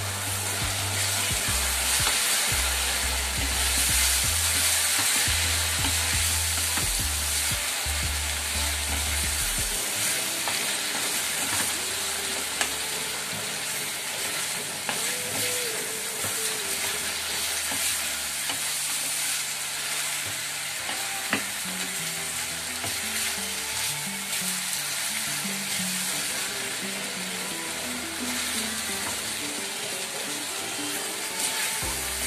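Diced vegetables (bell peppers, eggplant and onion with tomato) sizzling steadily as they fry in oil in a pan, stirred with a spoon, with a couple of sharp clicks from the spoon against the pan.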